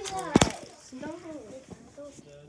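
Brief bits of children's high-pitched voices, with one sharp, loud knock a little under half a second in.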